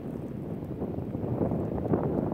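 Wind buffeting the microphone: an uneven low rumble that swells and eases, strongest near the end.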